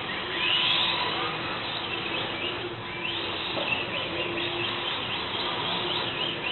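Electric motors of radio-controlled drift cars whining, rising in pitch again and again as the throttle is blipped, loudest in the first second.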